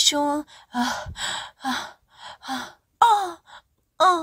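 A voice in short, breathy phrases broken by brief pauses, with sighing and gasping between the words.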